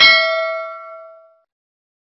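A notification-bell ding sound effect, several ringing tones together that fade out about a second and a half in.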